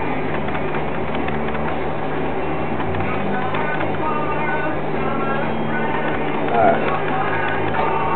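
Potter's wheel running with a steady low hum while a clay crock is worked on it.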